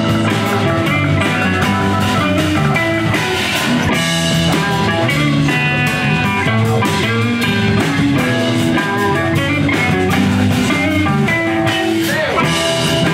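Live rock band playing: electric guitars picking melodic lines over a drum kit beat, loud and continuous.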